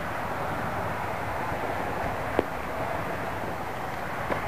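Steady outdoor rushing background noise, with a single sharp click a little past halfway.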